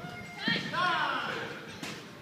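Voices of people in a gym hall, with a short burst of calls about half a second in, and one sharp knock near the end.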